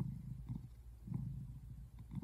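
Brown tabby American shorthair cat purring: a low rumble that swells and fades with each breath in and out.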